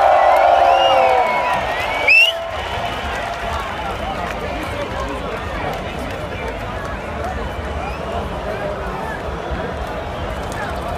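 Huge outdoor festival crowd: cheering and shouting that dies away in the first second or so, a sharp rising whistle about two seconds in, then the steady hubbub of thousands of people chattering.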